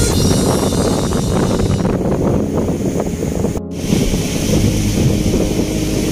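Strong wind buffeting the microphone, with sea surf underneath, as a steady loud rush; a brief break just past halfway.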